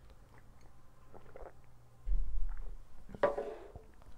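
A man sipping water from a glass, with faint swallowing and mouth sounds. About two seconds in there is a low, muffled rumble, and a short breath follows near the end.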